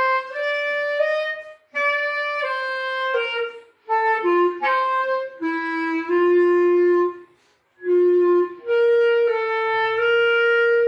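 A clarinet playing a simple solo melody, one held note after another moving in small steps, with three short breaks between phrases, about two, four and seven and a half seconds in. Its lowest, longest notes come in the second half.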